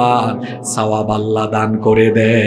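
A man's voice chanting in a melodic, sung delivery, holding one steady pitch from about a second in.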